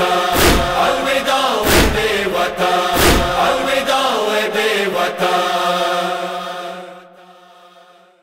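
Closing bars of a noha: chanted voices hold long notes over three heavy chest-beating (matam) thumps about 1.3 seconds apart. Then the voices carry on alone and fade out about seven seconds in.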